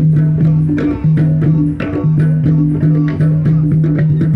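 A live band playing in the open: held low notes under a steady beat of percussive strikes.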